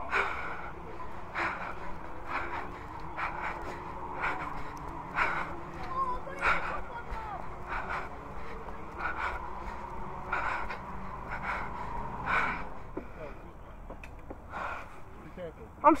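A person breathing close to the microphone, short breaths about once a second, with faint voices in the background.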